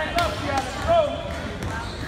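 A basketball dribbled on a hardwood gym floor, several sharp bounces, with spectators' voices over them in the first second.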